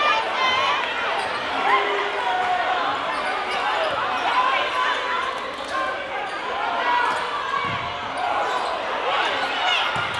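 Basketball game sound in a crowded gym: many spectators' voices in a steady murmur, with a basketball being dribbled on the hardwood court, all echoing in the hall.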